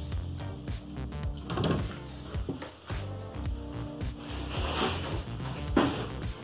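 Background music with a beat, and over it a scraping pour of granulated sugar from a plastic container onto the metal pan of a balance scale, loudest about a second and a half in and again near the end.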